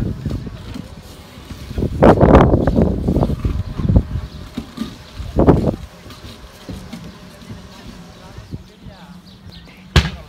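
Wind buffeting the microphone in gusts, loudest about two seconds in and again briefly about five and a half seconds in, then easing off.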